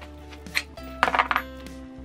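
Soft background music with sustained notes. About a second in, a short cluster of small hard clicks and clinks sounds, as hard candies in their pack are handled.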